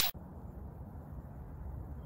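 Faint steady low rumbling background noise of an outdoor recording, following the very end of a whoosh sound effect right at the start.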